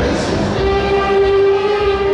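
Saxophone ensemble playing, settling into a long held chord about half a second in.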